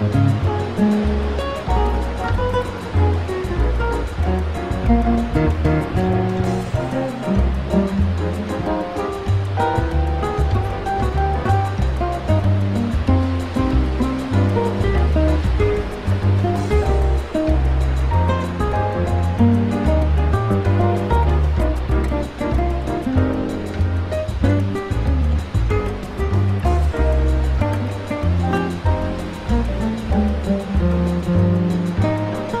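Instrumental Brazilian jazz music, with a bass line moving from note to note under melodic phrases.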